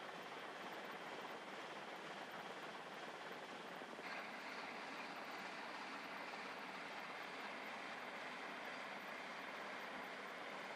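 Faint steady rushing noise of boats under way on open water, with no distinct engine note, changing abruptly to a brighter sound about four seconds in.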